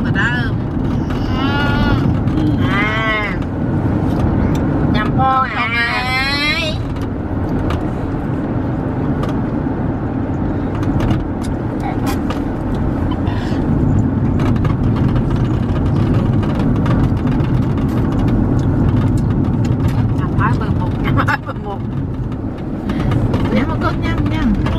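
Steady low rumble of a car heard from inside its cabin, with a baby's high-pitched squeals twice in the first seven seconds.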